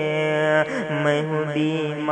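A voice singing an Urdu naat (devotional poem) unaccompanied in long, held, melismatic notes that bend and glide in pitch, over a steady low tone.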